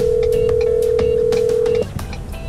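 Telephone ringback tone of an outgoing call: one steady tone lasting about two seconds that cuts off sharply near the end, over faint background music.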